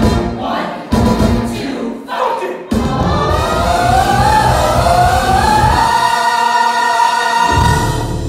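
Live stage-musical singing with the band, heard from the audience. There are loud sudden entries about one and three seconds in, then a long held vocal line that climbs in pitch.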